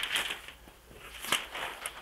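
Tracing paper rustling and crinkling as a large sheet and the tracing pad are handled, with one sharp crackle of the paper a little past halfway.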